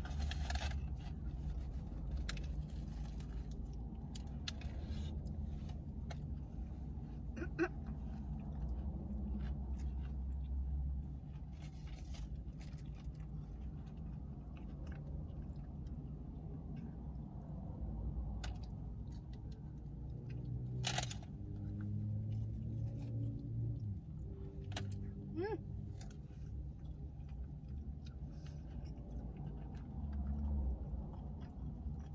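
Close-up chewing and crunching of a Cheesy Double Decker Taco, a soft tortilla wrapped around a hard taco shell, with many short crackles and clicks of mouth and wrapper. A low steady hum underneath stops about a third of the way in, and one sharper crack stands out about two-thirds through.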